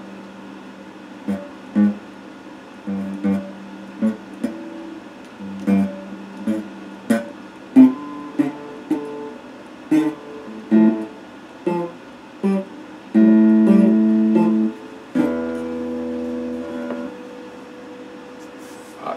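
Electric guitar being picked: short single notes and brief chords that each ring and die away quickly, then two longer held chords near the end.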